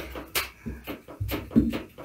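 A few separate strums and plucked notes on acoustic guitars and electric bass, noodling between songs rather than playing a tune.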